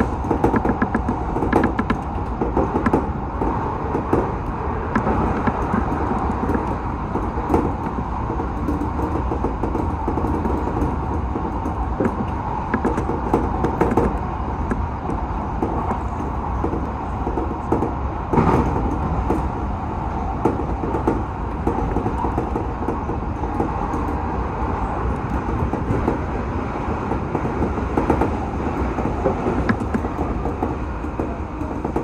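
Odakyu 1000-series electric commuter train running at speed, heard from inside the driver's cab: a steady rumble of wheels and running gear, with frequent clicks and knocks, one louder about eighteen seconds in.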